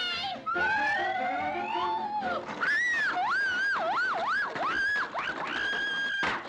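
Cartoon score imitating a siren: a whistle-like tone glides upward, then wails up and down about twice a second, and ends on a long held high note.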